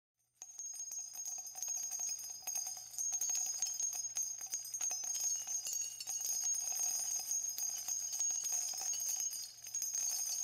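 Continuous metallic jingling, many small ringing clicks on top of one another, starting just under half a second in and running on with a faint low hum beneath.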